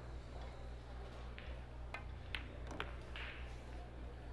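Sharp clicks of a pool cue striking the cue ball and the balls colliding, four clicks over about a second and a half around the middle, over a steady low hum.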